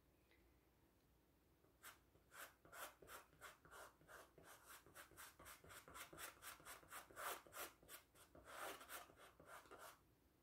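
Paintbrush strokes on stretched canvas: a faint, quick run of short brushing rubs, about three or four a second, as the brush works paint into the petals. It starts about two seconds in and stops just before the end.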